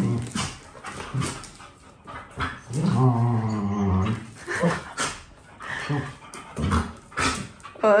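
Two Akitas play-fighting, one mouthing the other's face: short growls and grumbles, with one long, low, drawn-out grumbling call about three seconds in.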